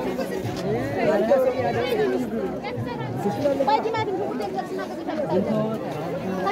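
Market crowd chatter: many people talking at once in overlapping voices, with no single speaker standing out.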